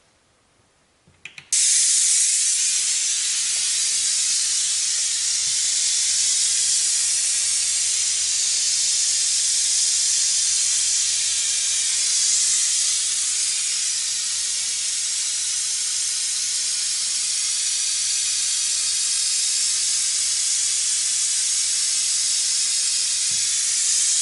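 AudioFrog car-audio tweeter playing pink noise through a passive crossover for a frequency-response reading: a loud, steady hiss with no low end. It switches on abruptly after a couple of clicks about a second and a half in.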